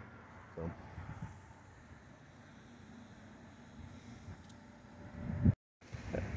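Faint outdoor ambience: a low, steady background rumble with no distinct event, cutting off abruptly near the end.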